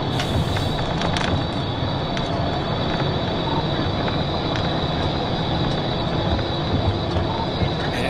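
Inside a police cruiser at well over 100 mph: a steady roar of road, tyre and wind noise with the engine underneath, and a steady high-pitched tone running through it.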